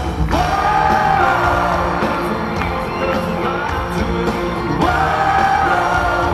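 A live band playing with drums and guitars under a singer who holds two long sung phrases, one near the start and one near the end, recorded from among the audience.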